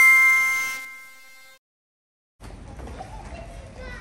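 A bell-like chime of several tones rings out and fades away over about a second and a half. After a short silence, faint outdoor ambience with a low wind rumble follows.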